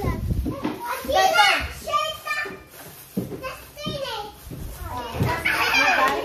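Children's and adults' voices chattering and calling out over one another.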